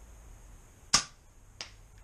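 Two sharp snaps: a loud one about a second in, and a much fainter one about half a second later.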